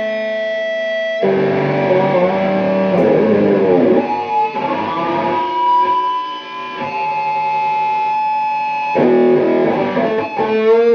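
Kramer electric guitar played with distortion in a slow blues, with long sustained notes and a bent note that rises in pitch about halfway through. A man sings a held note at the start.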